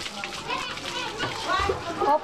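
Several voices talking over one another, with high-pitched voices among them: background chatter with no single clear speaker.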